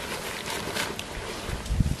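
Rustling and handling noise as things are dug out of a daypack's mesh front pocket, with wind buffeting the microphone, the low rumble strongest near the end.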